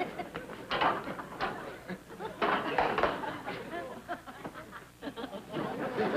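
Studio audience laughing in uneven bursts that rise and fall.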